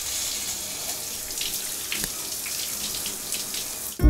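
Shower head spraying water: a steady, even hiss of falling water.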